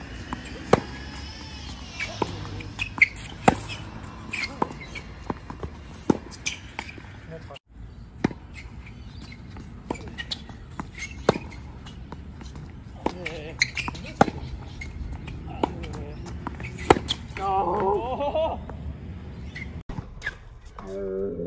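Tennis rally on a hard court: sharp racket-on-ball strikes and ball bounces, about one a second, with footsteps between shots.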